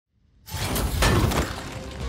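Film fight sound effects: a sudden crash about half a second in, with shattering and breaking and a sharp hit about a second in.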